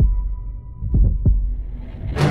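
Heartbeat sound effect over a low, steady hum: a double thump about a second in, as in a horror-trailer score.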